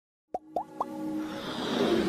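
Animated intro sound effects: three quick rising plops about a quarter second apart, then a whoosh that swells louder over a held musical note.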